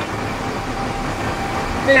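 Steady rush of city road traffic, an even noise of passing vehicles with a low rumble, heard in a pause of a speech through a handheld megaphone. The megaphone voice starts again right at the end.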